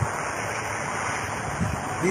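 Steady rushing outdoor noise with no distinct events or voices.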